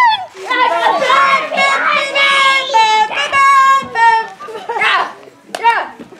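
Children's high-pitched voices calling out and singing long held notes while playing, with no clear words. The voices fade near the end.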